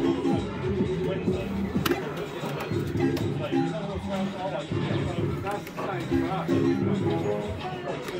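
Fruit machine playing electronic bleeping tunes as its reels spin, in short stepped notes over arcade background noise and distant voices.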